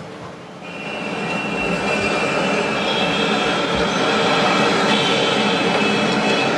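Recorded train sound effect: a train running with the high squeal of wheels on rails, fading in about a second in and then holding steady. A short knock sounds right at the start.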